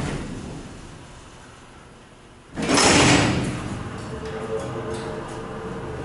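Freight elevator's power-operated doors and gate closing, ending in a sudden loud clatter about two and a half seconds in. A steady hum follows.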